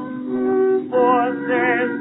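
Male singer with wide vibrato and instrumental accompaniment on a 1918 recording of a Yiddish theater song, its sound thin and dull. The voice drops out briefly under held accompaniment chords and comes back in about a second in.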